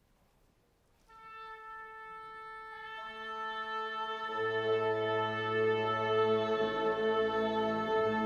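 Youth orchestra tuning. A single instrument sounds a held A about a second in, then more instruments join on the same note and its lower octaves, the low ones entering around four seconds in, and the sustained chord grows steadily louder.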